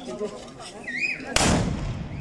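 A black-powder carnival musket fired with a blank charge: one sudden loud blast about two-thirds of the way in, its low rumble dying away slowly.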